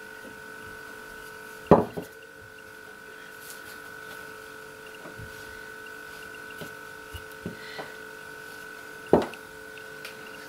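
Wooden rolling pin knocking against a wooden tabletop while pizza dough is rolled out and turned over. There are two loud sharp knocks, about two seconds in and near the end, with softer knocks and handling sounds between, all under a steady background hum.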